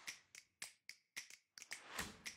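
A run of light, sharp clicks, about four a second and unevenly spaced, each dying away quickly.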